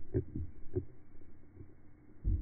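Three dull, low thuds in quick succession within the first second.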